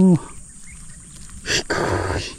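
Handling noise: a sharp knock about one and a half seconds in, then a brief rustle, as a climbing perch is shifted in a gloved hand.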